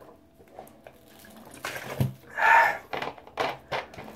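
After a quiet second or so, a knock, then a loud breathy exhale of disgust from a man eating mung bean sprouts, followed by a few short handling noises from a plastic soda bottle.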